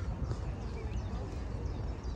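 Outdoor park ambience: faint voices of people nearby over a steady low rumble, with no single clear event.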